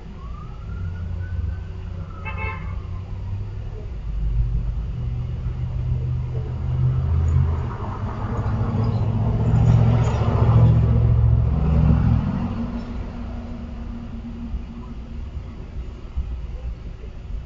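A motor vehicle driving past on the street, its engine and tyre noise swelling to a peak about ten seconds in and then fading, over a steady low rumble. A brief high chirping sound about two seconds in.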